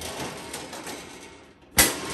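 Stainless steel lid of a Weber Genesis II side burner closed onto the grill with a single metallic clank near the end, leaving a short ring. Before it, faint handling noise of the parts being moved.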